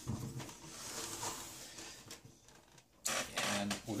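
A desktop PC tower being turned around on a wooden desk, with a short rough scraping noise about three seconds in as the case slides on the desktop.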